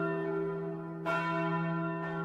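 A bell ringing, its tones held and slowly fading, then struck again about a second in.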